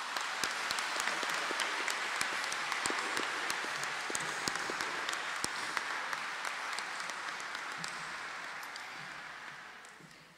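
Audience applause in a large hall: many people clapping steadily, the clapping fading away over the last couple of seconds.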